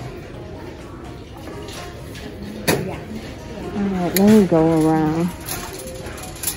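A person's voice holding one low note for about a second, most of the way through, with two sharp clicks before and during it, over the steady background noise of a busy store.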